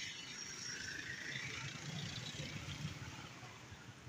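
Road traffic passing close by: a car and motorcycles running, a steady low engine rumble over tyre noise.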